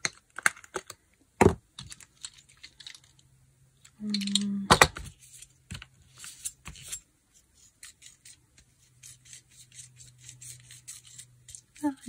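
Paint tubes being handled and squeezed, with a few sharp clicks and snaps of their caps in the first half. In the second half, a palette knife scraping in quick light ticks as it spreads and mixes the paint.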